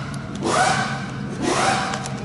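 Breathing close to the microphone: a rushing swell about once a second.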